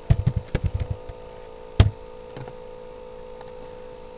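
Computer keyboard typing: a quick run of key strokes through the first second, then a single louder click a little under two seconds in.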